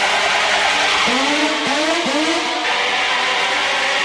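Hard techno DJ set in a breakdown: the kick drum drops out, leaving a hissing synth wash. From about a second in, a synth note swoops upward in pitch, three times in quick succession.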